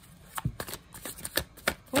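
A tarot deck being shuffled by hand: an irregular run of sharp card snaps and slaps that starts about half a second in, the loudest near its start.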